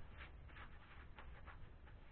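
Near silence: room tone with a faint low hum and a few faint ticks.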